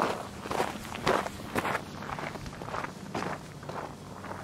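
Footsteps of two hikers crunching on a loose gravel track as they walk past and away, about two steps a second, loudest in the first second and a half and fading after.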